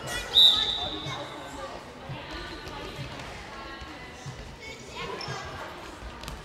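A short, loud blast on a referee's whistle about a third of a second in, with a handball bouncing on the hall floor in repeated thumps and voices echoing in the sports hall.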